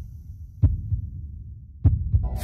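Sound design of an animated intro: a low, pulsing bass rumble like a heartbeat, cut by two sharp hits a little over a second apart.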